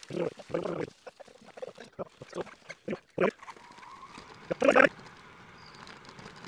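Fast-forwarded outdoor audio from an e-bike ride: short, squeaky bursts of sped-up voices come in quick succession, with the loudest burst near the end.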